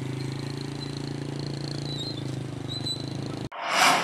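Small motorcycle engine running at a steady, even pitch. About three and a half seconds in it cuts off abruptly and a loud whoosh swells and fades, a transition sound effect.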